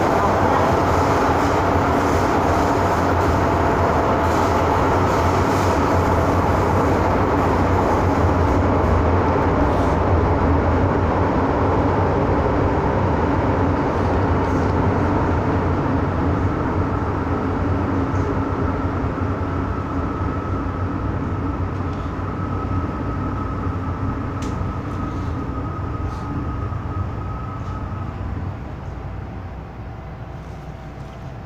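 Running noise of a Hong Kong MTR M-Train EMU heard inside a moving car: a steady rumble that eases off through the second half as the train slows. A steady high whine sounds through most of the later part.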